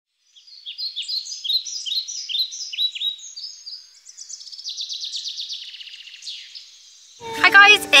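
Bird song: a run of short down-slurred chirps, about two or three a second, giving way about halfway through to a faster trill that fades out. A woman starts speaking near the end.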